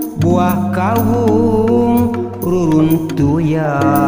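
A man singing an old Sundanese folk song in a wavering, ornamented voice with sliding pitch, over calung accompaniment: struck bamboo tubes keep regular sharp clicks beneath a sustained low tone.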